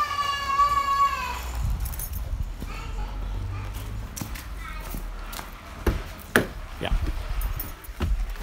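A child's long drawn-out call, held on one note and falling slightly before it stops about a second in. Then a low handling rumble and a few sharp clicks near the end.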